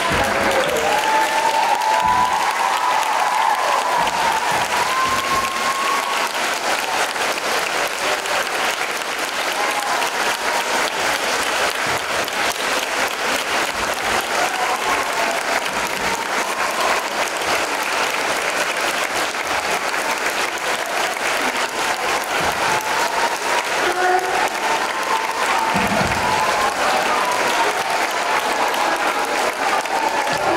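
A large group of schoolchildren clapping steadily and without a break. High children's voices call out over the clapping near the start and again near the end.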